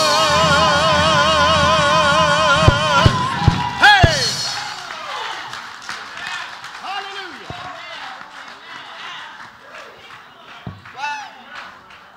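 A gospel choir holds its final chord with vibrato, ending about three seconds in with a few sharp hits and a short rising vocal cry. The music then fades into scattered voices and exclamations.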